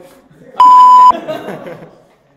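A censor bleep: a loud, steady, single-pitched beep lasting about half a second, starting a little after half a second in and cutting off abruptly, laid over the voices of the group.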